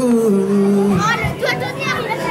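A singer holds a long note that steps down in pitch, then sings a shorter sliding phrase near the end, over a live band's accompaniment of acoustic guitar, keyboards and drums.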